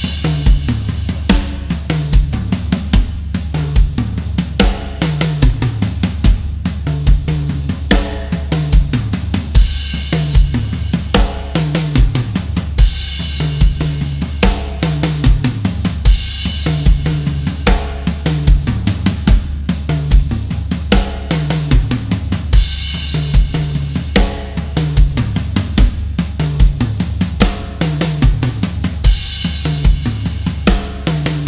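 Acoustic drum kit played in a steady groove: a regular bass drum beat under snare hits and tom runs that step down from the rack toms to the floor tom, with a cymbal crash every few bars. The tom fills vary from bar to bar, improvised around the written pattern.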